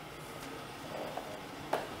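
Quiet indoor room noise with a few faint clicks and knocks, the sharpest one near the end.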